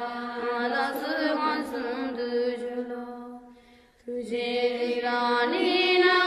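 Tibetan Buddhist devotional chant sung in slow phrases with long held notes. One phrase fades away about three and a half seconds in, and the next begins just after four seconds.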